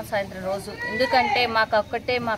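Speech only: a woman talking into a handheld news microphone, her voice rising and falling in pitch.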